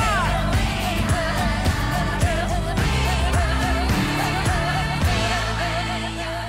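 Newscast theme music: a pop-style track with a wavering sung melody over sustained bass notes and a steady beat, thinning out in the last second.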